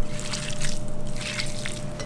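Fingers squeezing and crumbling a block of tofu on a plate, a run of irregular crackles as it breaks apart.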